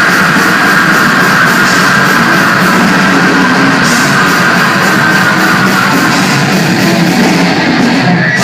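Live thrash metal crossover band playing loud distorted electric guitars and a drum kit, with a long high note held over the first six seconds or so.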